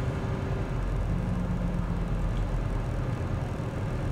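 Steady low engine hum of a car, heard from inside the cabin.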